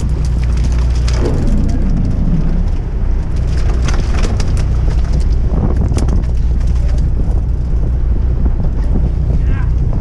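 A boat's engine running steadily at low speed, with wind buffeting the microphone.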